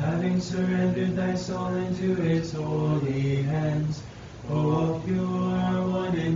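Unaccompanied voices chanting an Orthodox Vespers hymn in slow, long-held phrases, with a brief breath pause about four seconds in.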